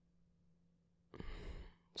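Near silence, then about a second in a man takes one soft, audible breath, lasting under a second, before speaking again.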